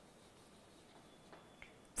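Chalk on a blackboard as a word is written: a couple of faint light ticks about a second and a half in, otherwise near silence.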